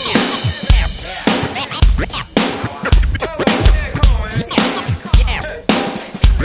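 Drum kit playing a steady funk groove: kick drum and snare on an even beat, with cymbals.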